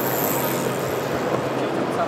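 Steady background hubbub of a large, busy indoor hall, with distant indistinct voices.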